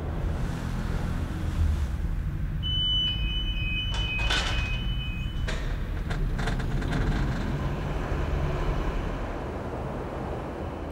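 Elevator running inside a bridge pylon: a steady low rumble heard from inside the cabin. A high steady tone sounds for about three seconds partway through, and several sharp clanks come in the middle.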